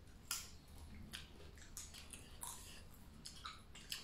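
Roasted salted pumpkin seeds being cracked open between the teeth by several people eating together. About ten faint, crisp cracks come at irregular intervals.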